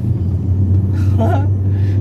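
Steady low rumble of a car's engine and tyres on the road, heard from inside the cabin while driving at street speed.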